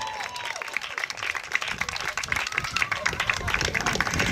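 A small audience applauding: many hands clapping in a dense, uneven patter.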